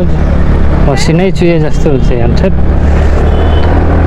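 TVS Ntorq scooter riding and gently speeding up at low speed, its engine and wind noise a steady low rumble, with the rider's voice over it for about a second and a half in the middle.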